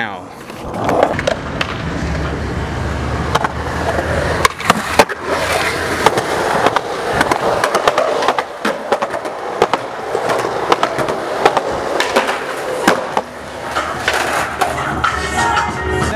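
Skateboard wheels rolling on concrete, broken by repeated sharp clacks of the board hitting the ground at irregular intervals.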